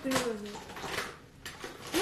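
A short voice sound, like a brief laugh, in the first half second, then a few light clicks and clatters of small objects being handled.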